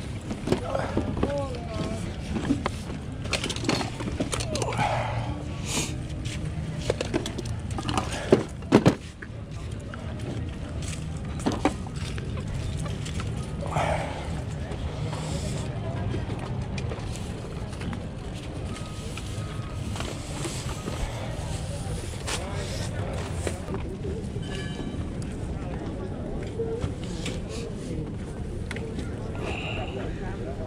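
Busy outdoor flea market: indistinct voices of people nearby and music playing in the background. In the first several seconds there are crinkles and sharp knocks as plastic-packaged goods are picked up and handled, the loudest a few clicks about eight to nine seconds in.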